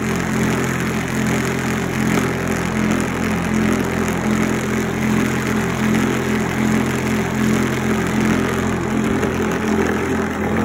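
Homemade pool ball polisher running steadily: its electric motor hums while the carpet-lined bucket oscillates and spins, rolling the pool balls around against the pad and each other.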